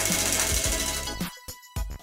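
Tabletop prize wheel spinning, its pointer flapper clicking rapidly against the rim pegs. The clicks slow and fade as the wheel coasts to a stop, with a last click near the end.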